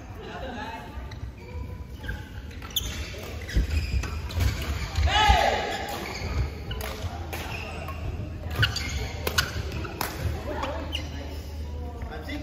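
Badminton rally in a large hall: sharp racket strikes on the shuttlecock at an uneven pace, several in quick succession in the second half, echoing in the hall.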